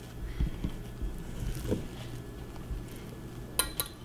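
Spatula spreading whipped cream-cheese frosting over a sponge cake layer: a few soft, dull taps and faint smearing, over a steady low hum.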